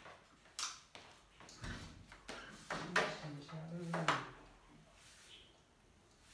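Handling noises: a few sharp clicks and knocks and a dull thump about a second and a half in, as a door is opened and an aquarium canister filter with its hoses is carried.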